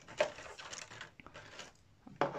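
Clear plastic model-aircraft packaging being handled as its top is pulled off: one sharp click just after the start, then faint rustling that fades away.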